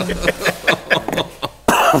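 Several people laughing in short quick pulses, then a sudden cough near the end.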